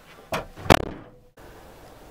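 Two sharp knocks about a third of a second apart, the second the louder, cut off abruptly. Then the steady low rumble of a moving car, heard from inside the cabin.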